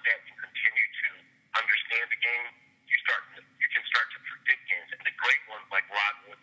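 Speech heard over a telephone line: a person talking in the thin, narrow-band sound of a phone call, over a faint steady hum.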